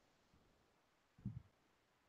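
Near silence: video-call room tone, broken once by a brief faint low bump a little past halfway.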